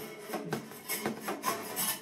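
A wooden drumstick scraping and tapping against a snare drum, with the loosened snare wires rattling as the stick is worked in under them. It comes as a series of light, irregular scrapes.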